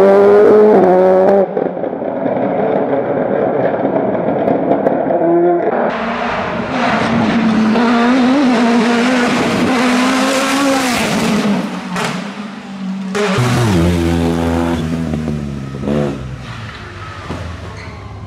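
Race car engines revving hard as several hillclimb cars, one after another, accelerate through tight bends. The engine pitch climbs, then drops steeply a few seconds before the end as one car lifts off.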